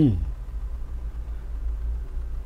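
A man's voice trails off at the very start, leaving a steady low hum of background noise with nothing else happening.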